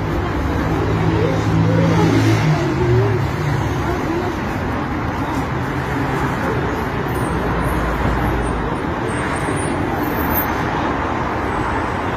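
Outdoor street ambience: a steady wash of road traffic noise, with people's voices talking over it in the first three seconds.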